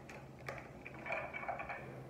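Tarot cards being shuffled by hand overhand: soft taps and rustles as packets of cards slide and drop onto the deck, with a sharper click about half a second in.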